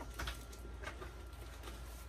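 Quiet rustling and handling sounds as a handbag is lifted out from among other purses in a cardboard box: a few brief rustles, the clearest just after the start.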